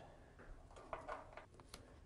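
Faint, scattered small clicks and rustles of hands tying a cord onto old wiring at a car's roof, in a quiet room.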